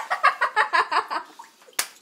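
Coconut water glugging out of a small hole in a whole coconut into a glass: a quick run of gurgles, about nine a second, that stops after a second or so. A single sharp click follows near the end.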